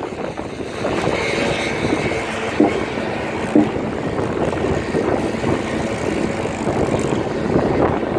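Steady machinery noise across an open construction site, with two short knocks about two and a half and three and a half seconds in.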